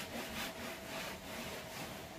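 Cotton rag rubbing wood oil into an old wooden tabletop in repeated back-and-forth strokes.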